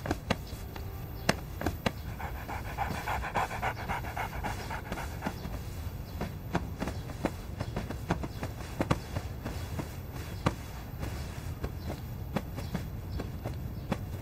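Cloth rustling with soft pats and small clicks as hands frisk a man's coat. The handling sounds come in scattered short bursts over a low steady background rumble.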